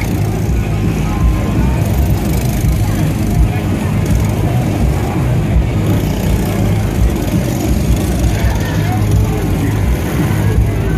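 Go-kart engines running as several karts lap the track and pass by, over a steady background of people's voices.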